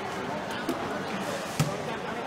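Hard-shell wheeled suitcase being handled on a hard floor: a couple of light knocks, then one sharp thump about one and a half seconds in. Voices and chatter echo in a large hall behind it.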